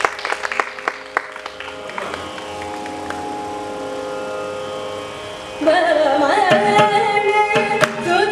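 Carnatic concert music: a mridangam plays strokes under held violin and vocal notes, then about five and a half seconds in a woman's voice and the violin come in louder with sliding, ornamented pitch while the mridangam strokes continue.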